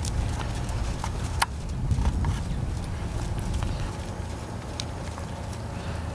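Hoofbeats of a Quarter Horse mare loping on soft arena dirt, with scattered sharp clicks among them, the loudest about a second and a half in.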